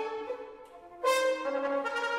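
Orchestral brass playing modernist music: a held chord fades away, then a loud new chord enters sharply about a second in and is held.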